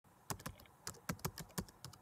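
Computer keyboard typing sound effect: quick, irregular key clicks, about five or six a second, starting about a third of a second in.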